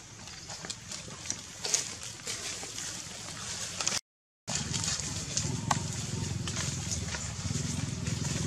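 Dry leaf litter crackling and rustling under moving monkeys, in scattered sharp clicks. The sound drops out completely for half a second about four seconds in, and a low steady hum comes in under the crackles after it.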